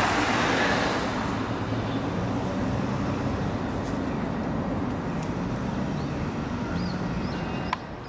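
Steady road traffic noise with a low engine hum, loudest in the first second and then even, with a short click near the end.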